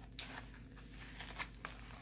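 Faint paper rustling with a few light clicks as a mail envelope is handled and opened.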